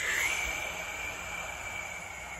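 A man's long, slow exhale through pursed lips, the out-breath of a deep-breathing exercise: a steady breathy hiss with a faint whistle-like tone in it, slowly fading.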